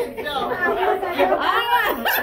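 Several people's voices talking and calling out over one another, words indistinct.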